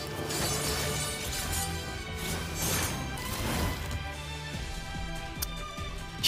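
Anime fight-scene soundtrack: music playing under several sharp crashing impacts.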